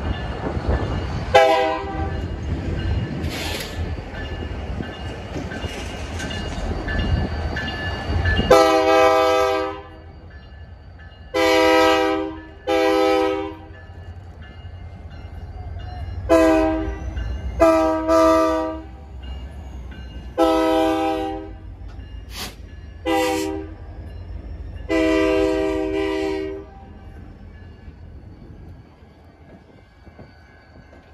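Air horn of a diesel freight locomotive sounding about a dozen blasts, some short and some held a second or more, as a steady multi-note chord. During the first several seconds the locomotives' diesel engines also rumble close by; the later blasts warn a street grade crossing.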